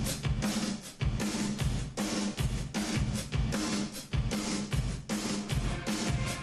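Hard-rock cartoon theme music driven by a drum kit, with kick and snare hits keeping a steady beat over a bass line.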